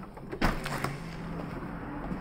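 A sliding glass balcony door is opened: a sharp click of the latch about half a second in, then the door rolls along its track with a low steady hum for about a second.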